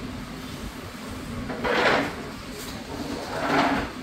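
Restaurant dining-room ambience: a steady low hum, with two short swelling rushes of noise, one about a second and a half in and one about three and a half seconds in.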